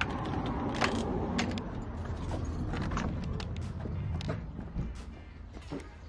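A brass door knob turned and a shop's glass door opened, with irregular clicks and knocks from the latch and door, then footsteps on a tiled floor, over a steady low background rumble.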